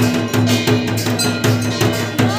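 Temple aarti percussion: a drum beating a fast, steady rhythm, about three to four strokes a second, with a metal bell clanging along.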